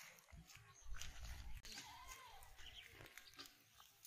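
Near silence: quiet outdoor ambience with a faint low rumble and a few small scattered clicks.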